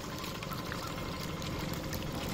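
Water sloshing and trickling as a cloth holding small fish is dipped into shallow lake water, letting the fish out.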